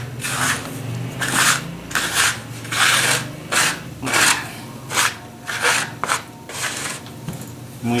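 Hands kneading a crumbly shortening-and-flour dough against a floury wooden tabletop, with a plastic dough scraper: a run of short rubbing, scraping strokes, about two a second.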